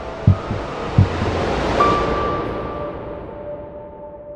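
Trailer sound design: two pairs of low, heartbeat-like double thumps in the first second and a half, under a rising whoosh that swells to a peak about two seconds in, where a high ringing tone comes in. The swell then fades away, leaving a held tone.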